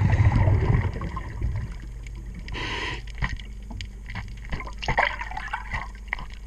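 A scuba diver breathing underwater: a burst of exhaled bubbles gurgling for about the first second and a half, a short hiss of an inhaled breath through the regulator near the middle, and scattered clicks and knocks after it.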